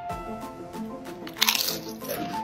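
A crisp crunch of a potato chip coated in gold leaf being bitten, one sharp burst about one and a half seconds in, over background music.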